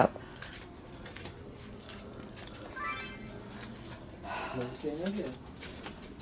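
A dog whines briefly about halfway through. Scuffs and small knocks of someone walking with the camera run underneath, and a faint low voice-like sound comes near the end.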